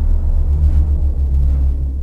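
Deep, steady low rumble of a logo-intro sound effect, the sustained tail of a cinematic boom, fading slightly near the end.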